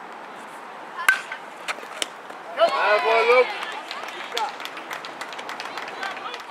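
A pitched baseball meets the plate with one sharp smack about a second in, followed by a lighter knock a second later. Then comes a loud shout of about a second from a player or onlooker, over steady outdoor field noise.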